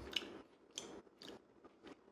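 A person chewing a mouthful of burger with a pickled onion topping: faint, soft crunches about every half second.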